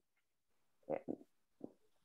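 Near silence on a video-call line, broken about a second in by two short faint vocal sounds and one more near the end, as a speaker pauses mid-sentence.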